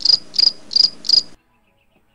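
Cricket chirping: a steady run of short, high chirps, about three a second, that cuts off suddenly a little over a second in.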